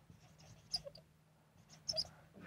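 Marker squeaking on a whiteboard as a word is written: two brief faint squeaks, about a second apart.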